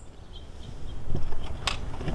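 Plastic latch of a Polaris Atlas XT pool cleaner's top lid being released and the hinged lid lifted open: a faint tick about a second in and a sharper click near the end, over a low rumble.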